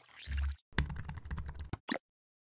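Keyboard-typing sound effect: about a second of quick key clicks, then one separate sharper click near the end. It opens with a short sweeping sound over a low thump.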